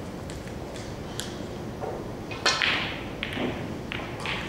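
A snooker shot: a sharp click of cue and ball about two and a half seconds in, the loudest sound, followed by a brief noisy tail, with a few fainter clicks of the balls around it.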